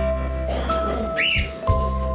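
A simple electronic melody of steady stepped notes over a repeating bass line, with a short rising-and-falling whistle about a second in that recurs at the same point each time the tune loops.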